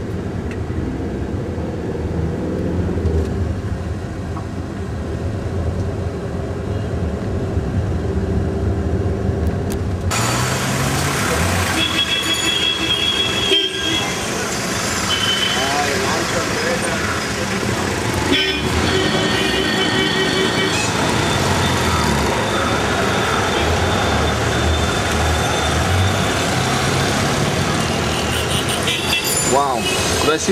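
Town traffic heard from a moving car: engine and road noise, muffled at first, turning suddenly clearer and fuller about ten seconds in. From then on vehicle horns toot several times.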